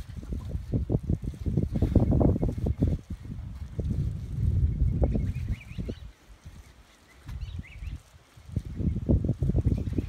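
Wind buffeting the microphone in irregular gusts, easing off for about two seconds past the middle, with faint bird chirps over it.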